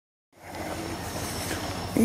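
A steady low rumble of a freight train at a distance, coming in a third of a second in and holding level.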